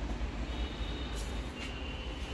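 Steady low background rumble, with a faint high whine starting about half a second in and two brief soft rustles near the middle.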